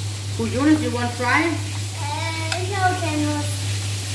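A fork stirring and tossing a dressed salad in a dish, over a steady hiss of food frying in oil and a constant low hum. A voice talking is the loudest sound through most of it.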